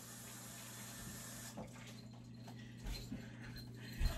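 Faint, distant kitchen tap running as a raw steak is rinsed under it, the water stopping about a second and a half in; a few soft knocks follow.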